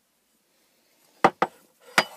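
Three sharp knocks of hard items clacking together as cage furnishings are handled: two close together about a second in, then a louder one at the end.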